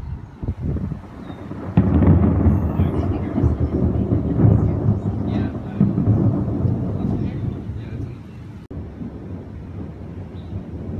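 A long roll of thunder. It starts suddenly about two seconds in, stays deep and loud for several seconds, then dies away near the end.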